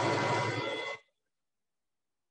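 Metal lathe running with its spindle at 800 rpm, a steady mechanical noise with a low hum, as the chamfer tool is brought up to the workpiece. The sound cuts off suddenly about a second in.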